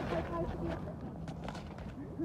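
Footsteps of several people walking on a paved path, a few sharp steps standing out, with faint talking in the background.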